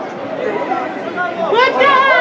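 People chatting at the pitch side, with one voice growing loud about one and a half seconds in.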